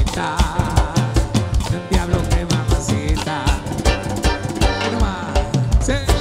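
Live cuarteto band playing, with a steady percussion beat from drums and congas under keyboards.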